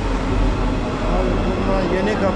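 Metro train pulling slowly into an underground platform: a steady low rumble, with voices from the waiting crowd over it.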